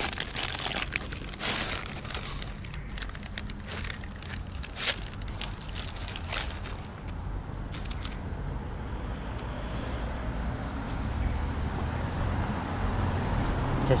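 Paper bakery bag crinkling and rustling in repeated sharp crackles as a sausage roll is felt for and pulled out, dying away about seven seconds in. After that, a steady low rumble of street traffic builds toward the end.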